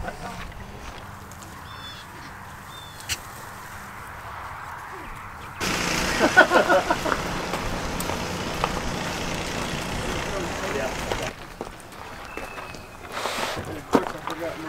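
Indistinct voices over outdoor background noise. About halfway through, the background suddenly gets louder, with a steady hiss and some mumbled talk, then drops back down near the end.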